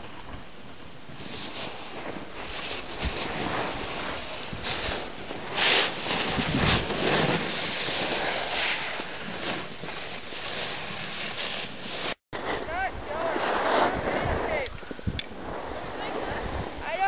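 Wind rushing over the microphone and the hiss and scrape of sliding over packed snow while riding down a ski slope. The noise surges and eases, and cuts out for a moment about twelve seconds in.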